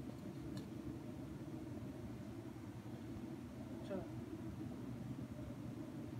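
Steady low background hum. A faint voice is heard briefly about four seconds in.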